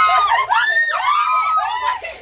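Several women shrieking and squealing with laughter, a run of long, high-pitched cries that rise and fall.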